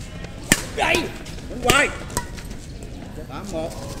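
Badminton racket striking a shuttlecock with a sharp crack about half a second in, then short shouts from the players and a lighter racket hit a little after two seconds.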